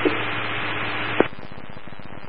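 Police scanner radio static between transmissions: an open channel hiss that cuts off with a click about a second in, leaving a quieter steady hiss and low hum.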